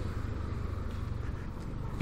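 Yamaha Aerox 155 scooter riding at low speed: a steady, fairly quiet engine drone mixed with road noise.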